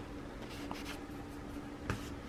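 Paper sticker sheet being handled: soft paper rustling and rubbing, with a single light knock near the end.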